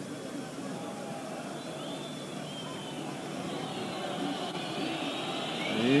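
Steady noise of a large football stadium crowd, heard through an old television broadcast's sound. A man's voice comes in right at the end.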